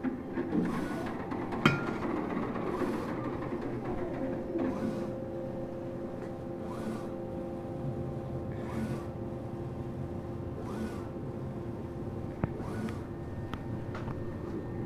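Mimaki UJF-6042 UV flatbed printer running, with a steady hum under a repeating swish and short rising whine about every two seconds as the print carriage sweeps back and forth. There is one sharp click a couple of seconds in.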